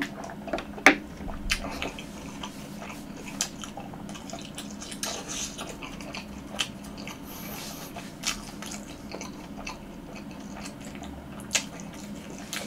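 Close-miked chewing of a crisp fried twisted-dough hot dog: scattered crunches and clicks throughout. A sharper click comes about a second in.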